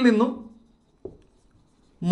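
Marker pen writing on a whiteboard, faint strokes, with one short sound about a second in.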